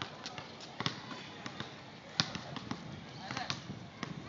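Basketball hitting and bouncing on an outdoor asphalt court: a few separate sharp bangs, the loudest about two seconds in.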